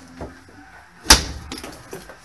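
A single loud bang from ceiling demolition work about a second in, sharp and followed by a short ring in the room.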